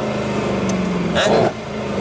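Mercedes C-class engine running with a steady note inside the cabin. About one and a half seconds in its note drops slightly and it gets quieter, with a brief voice just before.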